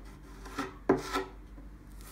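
A hand tool scraping and rubbing across a painted wooden furniture top while filler is worked into small holes and smoothed over. There are a few separate strokes, the sharpest about a second in.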